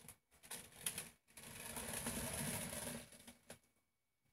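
A wet acrylic-poured canvas being handled and turned on a plastic-covered board: a few light knocks and clicks, then about two seconds of the canvas scraping and rubbing across the plastic.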